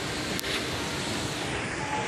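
Steady background noise of a large mall interior, a constant even rush like ventilation, with a single sharp click about half a second in.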